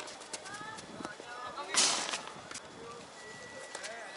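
Tennis doubles rally on an outdoor hard court: sharp clicks of the ball off rackets and the court, a few short rising squeaks early on, and a loud rushing burst a little under two seconds in.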